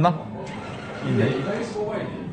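Men's voices: a short, loud vocal sound rising in pitch at the start, then quieter low talk.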